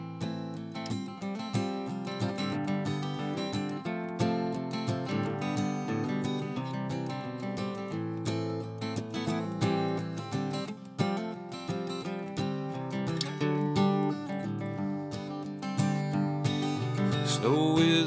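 Acoustic guitar strummed and picked in a steady country-folk rhythm, playing a song's instrumental introduction before the singing starts.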